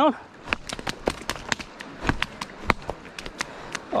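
Irregular sharp clicks and knocks of footsteps and movement on a wet gravel riverbank, over faint flowing water.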